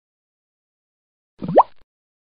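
Silence, then about one and a half seconds in a single short cartoon 'bloop' sound effect that rises quickly in pitch.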